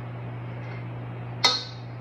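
A single sharp metallic click with a brief ring about one and a half seconds in, from a small metal cookie scoop being worked against the mixing bowl, over a steady low electrical hum.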